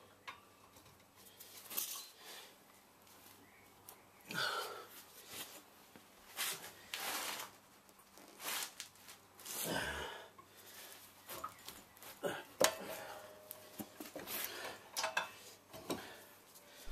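Scattered clinks and scrapes of a breaker bar and socket worked on a rear brake caliper bracket bolt, mixed with brief rustling, coming at irregular times.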